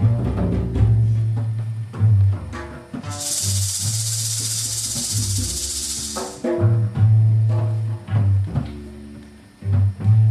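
Live improvised band music: a bass instrument repeats low notes under plucked string notes. About three seconds in, a percussion rattle or shaker adds a steady high hiss for about three seconds.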